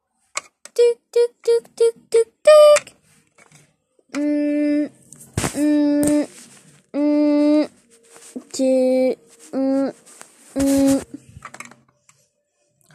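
A child's voice imitating a phone call being placed: a quick run of short dialing beeps, then six long, level 'tuut' ringing tones with pauses between them.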